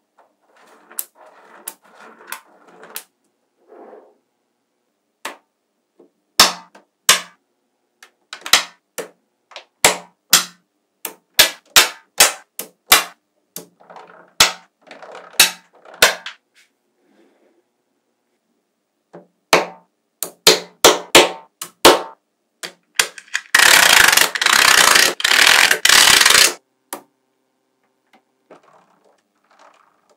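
Small magnetic balls clicking and snapping together as rows are pressed onto a slab of balls, in sharp separate clicks that come thick and fast in places. Near the end, about three seconds of dense, continuous rattling of many balls at once.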